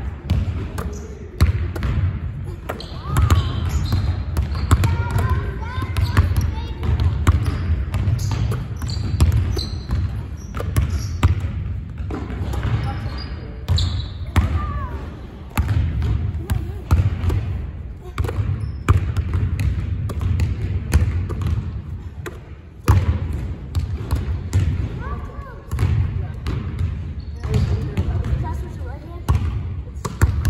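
Basketballs bouncing on a hardwood gym floor and smacking into hands as they are passed and caught, a quick run of short, sharp impacts throughout, with voices in the background.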